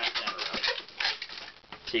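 Inflated latex twisting balloon squeaking and rubbing as it is twisted into bubbles: a quick run of short squeaks that eases off near the end.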